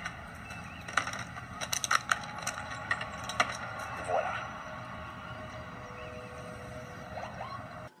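Soundtrack of a TV drama excerpt: a low, steady ambient bed with scattered sharp clicks and knocks and a brief faint voice about four seconds in.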